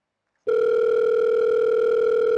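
A telephone call tone: one steady, even beep that starts about half a second in and holds, as a phone call is being placed.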